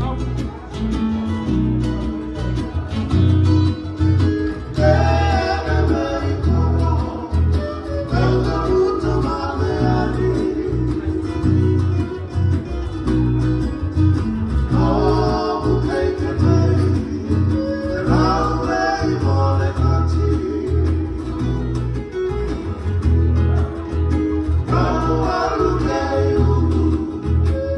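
Fijian sigidrigi string band: strummed acoustic guitars and ukulele over a strong bass line, with men singing together into microphones in phrases every few seconds and instrumental stretches between them.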